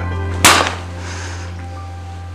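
A single sharp slap across a man's face about half a second in, over a sustained low music chord that slowly fades.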